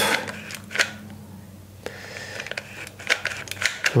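Trigger and feed mechanism of a hot-melt glue gun clicking as it is squeezed repeatedly, pushing a polyamide filler stick through to purge the leftover melt into a silicone mould. There are a few separate sharp clicks, then several in quick succession near the end.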